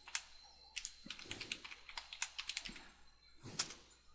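Computer keyboard typing: a quick run of keystrokes lasting about two seconds, then one louder click near the end.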